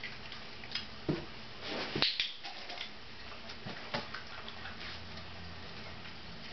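A few scattered light clicks and taps from hands, treats and a small dog moving close to the microphone, the sharpest about two seconds in.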